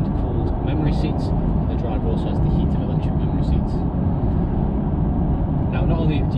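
Steady road and tyre noise with a low drone, heard from inside the cabin of a Mercedes-Benz S350d saloon driving at a steady speed on a straight road.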